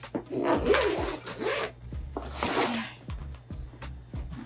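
A suitcase zipper pulled in a few rasping strokes.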